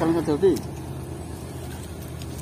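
A man's brief spoken remark, then a steady low background hum.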